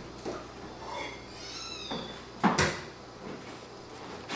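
A fork knocking against a china plate a little past halfway through, the loudest sound. Shortly before it comes a brief high-pitched squeak that rises and falls.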